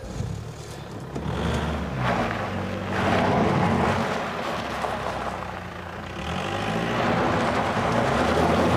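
Motor vehicle engine running, its pitch shifting, with a rushing noise that swells about three seconds in.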